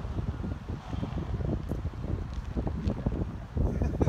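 Wind buffeting the phone's microphone: a gusty, low rumble that rises and falls.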